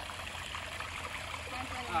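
A small, shallow stream trickling steadily over rock, with a person's voice starting near the end.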